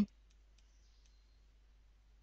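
A few faint, sparse keyboard key taps as a short name is typed.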